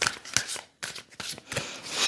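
A deck of tarot cards being shuffled by hand: a quick, uneven run of short papery slaps as cards drop from one hand to the other.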